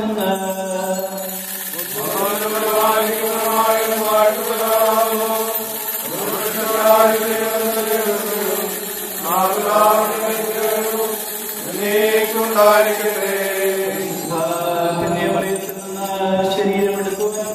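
Liturgical chanting by a voice in long held notes, each new phrase starting about every three to four seconds, over a steady low tone.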